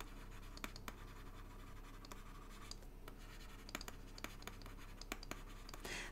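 Faint scratching and scattered light ticks of a stylus writing on a tablet screen, over a low steady hum.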